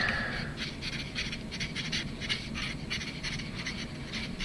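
Felt-tip marker writing on paper: a quick, irregular run of short scratchy strokes as letters are drawn.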